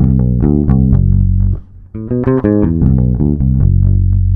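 Electric bass guitar, a Fender, playing a rock riff phrase from the melodic minor scale twice: a quick run of single notes that ends on a held low note each time.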